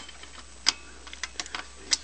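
A few sharp, short clicks and ticks of small metal gears being handled and seated by hand in an ATV starter motor's gear housing. The loudest click comes well under a second in, with another near the end.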